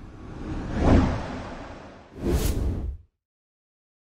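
Logo-animation sound effect: a whoosh that swells to a peak about a second in and fades away. It is followed by a second, shorter whoosh with a sharp hit in the middle, which cuts off about three seconds in.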